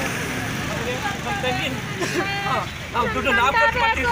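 Several people talking at once in the street, with one voice growing louder and clearer about halfway in, over a steady low rumble of a vehicle.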